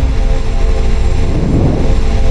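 Cinematic logo-reveal sound effect: a loud, deep rumbling drone with held tones over it, swelling again about one and a half seconds in.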